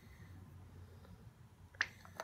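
Faint steady room hum, with one sharp click near the end from a metal spoon being handled against the gel tube and bowl.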